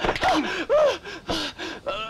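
Fighters' short gasps and yelps of exertion, several in quick succession, with sharp slaps of blows landing between them.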